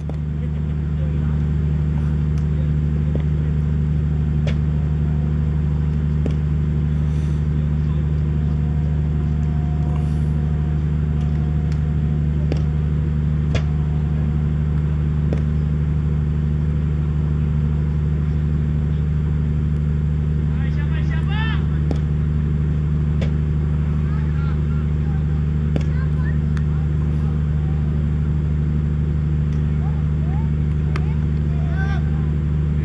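A steady low mechanical hum, like an engine or generator running without change, with faint distant voices briefly about two-thirds of the way through.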